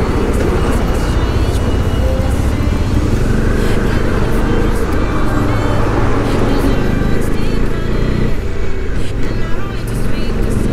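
Motorcycle riding past a convoy of army trucks: a steady, heavy rumble of engines and road noise on the bike-mounted microphone. The rumble wavers and eases a little near the end as the last truck is passed.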